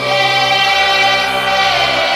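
Choir singing slow, sustained chords, a new chord entering at the start and one upper voice sliding down near the end.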